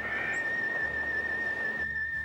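A single high whistled note, held steadily with a slight waver, closing a Western-style theme song.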